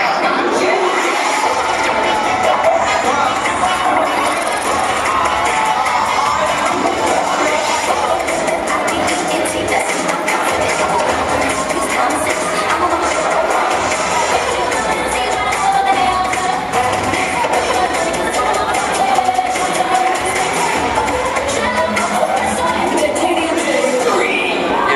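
Cheerleading routine music playing loudly throughout, with a crowd cheering and screaming over it.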